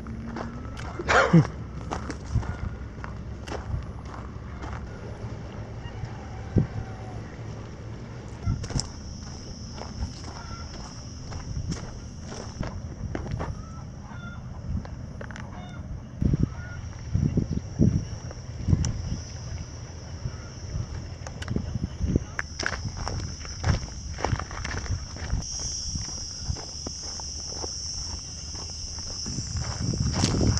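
Footsteps on a dry dirt path, with a steady high-pitched buzz of cicadas that comes in about eight seconds in and grows louder near the end. A short falling cry about a second in is the loudest sound.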